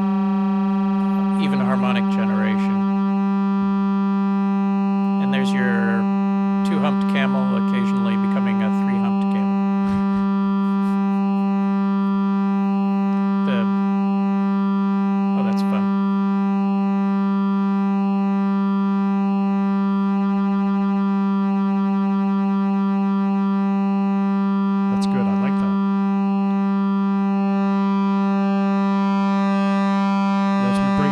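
Sustained analog synthesizer drone processed by a Pittsburgh Modular Flamingo harmonic-interpolation module: one steady pitch with a dense stack of overtones. The modulation reshapes only the top half of the waveform, giving a shifting, pulse-width-like tone colour.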